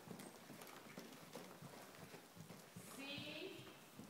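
Faint hoofbeats of a ridden horse moving around an arena.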